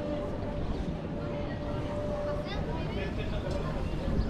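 Indistinct chatter of passers-by in a busy pedestrian plaza over a steady background hum, with no clear words.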